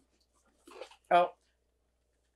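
Speech only: a short spoken "Oh" a little after a second in, with a fainter brief vocal sound just before it; otherwise near silence.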